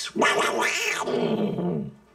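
A single growling roar like a jaguar's, loud and rough, lasting most of two seconds and fading out near the end.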